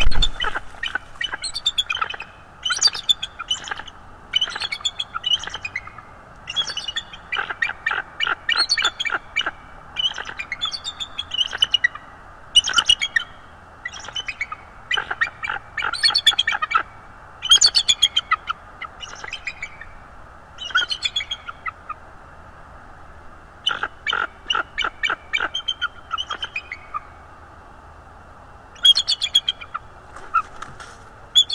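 Bald eagles calling: series of high, rapid chittering notes, repeated again and again with short pauses, as an adult drives a juvenile off its perch. A loud rush of wingbeats as the adult lands at the very start.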